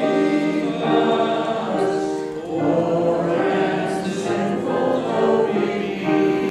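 A congregation singing a slow hymn together, accompanied by an upright piano, with notes held for about a second each.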